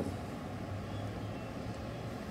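Steady low background rumble with no distinct event in it.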